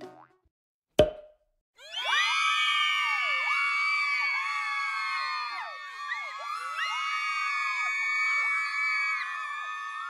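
A single sharp pop about a second in: the cork coming out of a bottle of pink sparkling wine. From about two seconds on, a dense layer of many overlapping swooping, whistle-like tones carries on.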